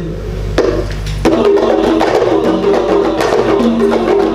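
Qasidah ensemble music: a low rumble, then about a second in the band comes in with frame drums (rebana) beating a quick, dense rhythm under a held melody line.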